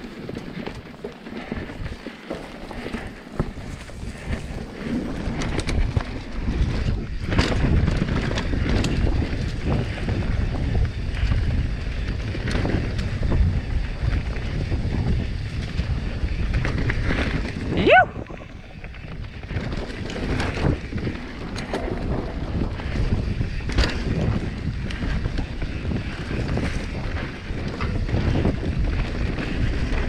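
Full-suspension mountain bike descending a dirt singletrack at speed: wind buffeting the microphone over a steady rumble of tyres on leaf-strewn hardpack, with frequent knocks and rattles from the bike over roots and bumps. It grows louder a few seconds in, and about 18 seconds in the rider lets out a short rising whoop.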